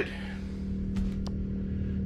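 Steady low hum of a generator running, heard from inside the travel trailer it powers, with a few faint clicks about a second in.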